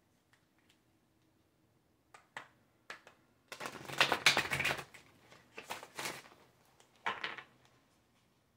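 Oracle card deck being shuffled by hand: a few light taps, then three bursts of rapid card flicking, the longest and loudest just after the middle.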